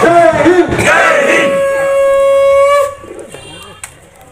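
Group of voices singing, then one long steady horn-like note held until it cuts off sharply about three seconds in.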